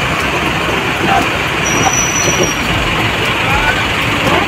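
Tour buses running and manoeuvring in a parking lot, a steady heavy noise with voices of people in the background. A thin high whistle-like tone sounds for about a second midway.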